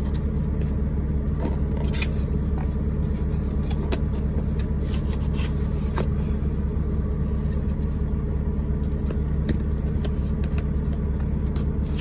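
Semi-truck's diesel engine idling steadily under the cab, with scattered clicks and scrapes of a cardboard box being opened and handled close by.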